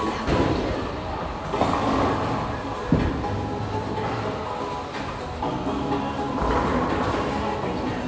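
Background music over the low rumble of a bowling alley, a bowling ball rolling down the lane, with one sharp knock a little before three seconds in.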